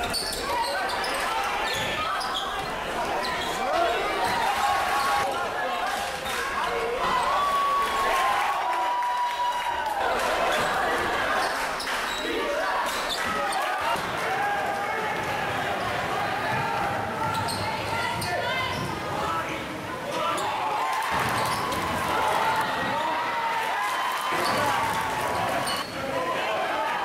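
Live game sound from a basketball game on a hardwood gym floor: the ball bouncing, sneakers squeaking in short sliding chirps, and a steady murmur of crowd and player voices.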